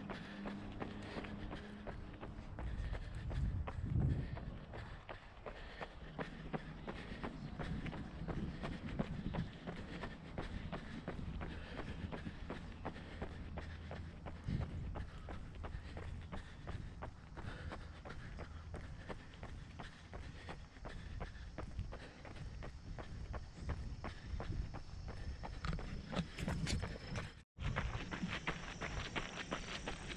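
A runner's footfalls on a paved trail, a steady running rhythm of even, repeated steps.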